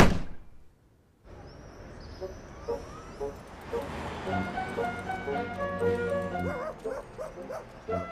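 A sharp thud, the loudest sound here, fading within about a second, then a light cartoon music cue that starts about a second later and runs on with repeated pitched notes.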